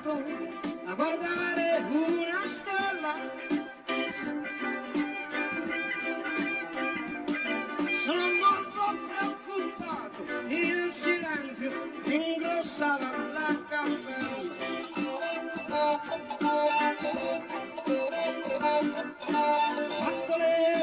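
A band playing live, with male voices singing over guitar.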